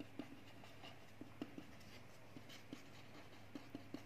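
Faint scratching and small irregular taps of a marker pen writing on ruled notebook paper.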